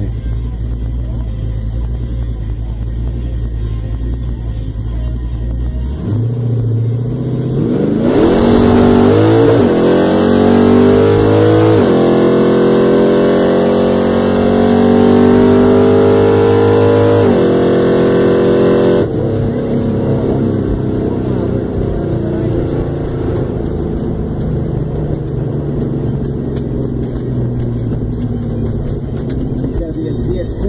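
Nitrous-fed LS1 V8 of a 1998 Pontiac Trans Am heard from inside the cabin on a quarter-mile drag run. It idles at the line and revs up for the launch. It then pulls at full throttle, rising in pitch through each gear with three upshifts, under a loud rushing noise. About eleven seconds after the launch it cuts off sharply as the throttle is lifted, and the engine runs low while the car coasts.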